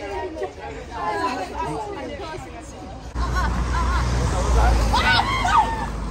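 Young women's voices chattering together on a street. About three seconds in, a steady low rumble sets in suddenly, with high-pitched exclaiming voices over it.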